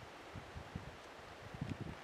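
Faint outdoor ambience of light wind, with a few soft low thumps near the end.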